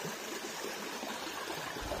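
Small woodland brook running over rocks and stones: a steady, even rush of water.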